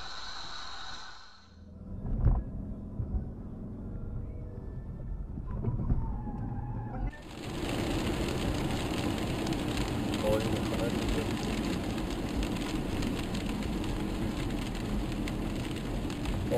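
Dashcam recording of a car being driven: a single thump about two seconds in, then, from about seven seconds in, a steady rush of tyre and road noise on a wet road heard from inside the car.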